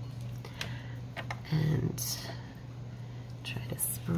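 A woman murmuring and whispering under her breath: a short hum-like sound about one and a half seconds in, then a breathy hiss. A few soft clicks come from handling the paper and supplies, over a steady low hum.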